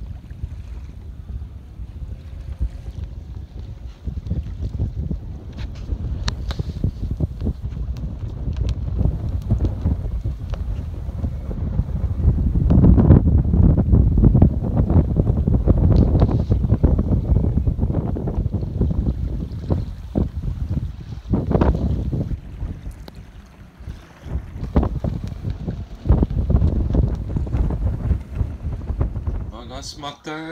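Wind buffeting the microphone on the deck of a sailing yacht, gusting and loudest around the middle, over the wash of open water.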